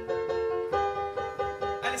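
Acoustic instrumental accompaniment in a live song, a short passage between sung lines: single notes struck a couple of times a second, each left ringing.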